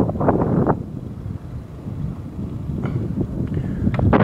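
Low rumble of a car driving, road and wind noise, with wind on the microphone.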